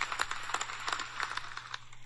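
Faint, irregular clicking and crackling over a low steady hum, with no speech.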